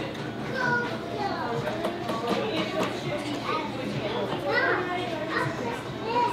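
Background voices of children talking and playing, several at once.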